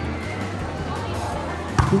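A volleyball struck once by a player's hands near the end, a sharp slap that is the loudest sound. Background music and crowd voices play throughout.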